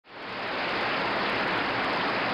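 A steady, even rushing noise with no tone in it, fading in over the first half second.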